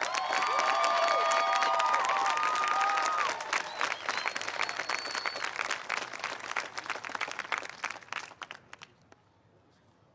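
Audience applauding and cheering, with sustained whistles over the clapping in the first five seconds or so. The clapping thins out and dies away about nine seconds in.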